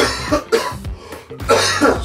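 A man coughing into his fist: a few sharp coughs, the longest and loudest near the end.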